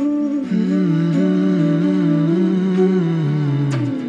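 Background music: a voice humming a slow, wavering melody over soft instrumental backing.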